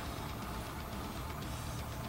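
A pause in speech filled only by steady room tone: a low, even hum with faint hiss.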